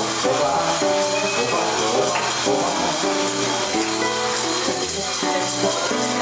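Samba music with a steady beat, led by shaker and tambourine-like percussion under held melodic notes.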